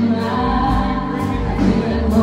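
Live country band playing loudly: a woman sings lead over electric guitars, bass, keyboard and drums, with cymbal strokes about twice a second.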